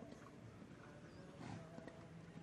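Faint sound of a horse cantering on sand arena footing, its breathing audible, with one louder blow about a second and a half in.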